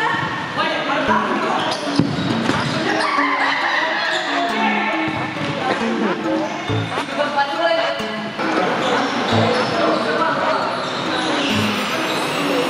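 Futsal ball being kicked and bouncing on an indoor court, a few sharp thuds, with voices and background music throughout.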